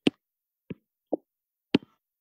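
Four short, sharp taps of a stylus on a tablet's glass screen, unevenly spaced over two seconds, the first and last the loudest.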